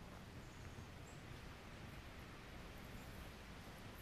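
Quiet outdoor forest ambience: a steady low rumble and hiss, with two faint, short high chirps about half a second and a second in.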